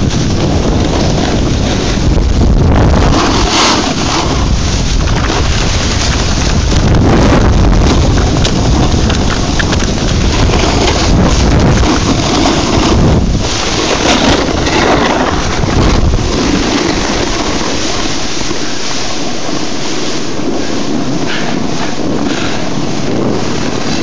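Loud wind buffeting the camera's microphone while riding downhill, a dense rumbling rush heaviest in the bass that eases somewhat in the last third.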